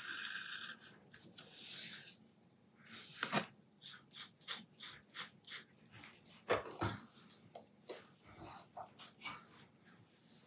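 Metal dip-pen nib scratching on paper at the start, then a run of short clicks and taps as the pen is lifted and handled. The loudest knocks come about a third of the way in and again past the middle.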